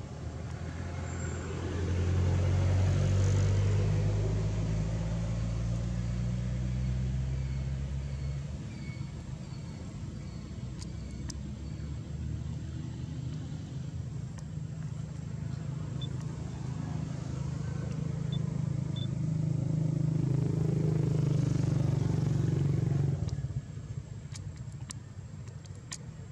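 A motor vehicle's engine running, a low steady hum that grows louder about two seconds in, eases off, then builds again near the end before dropping away.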